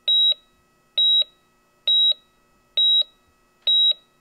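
Electronic heart-monitor-style beep sound effect: five short, high, steady-pitched beeps at an even pace of a little under one a second.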